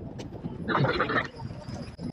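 A nearby person's voice heard briefly, about half a second in, over the low background murmur of an outdoor crowd.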